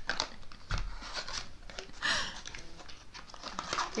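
Crinkling and rustling of packaging as a small white cardboard box is handled and opened and a wrapped product is pulled out, with a soft bump about a second in.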